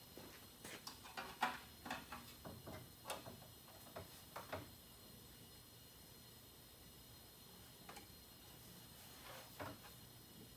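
Faint, scattered clicks and light metal taps of a bent sheet-metal plate being set in place and handled at a car's radiator support: about a dozen in the first five seconds, then a pause, and a couple more near the end.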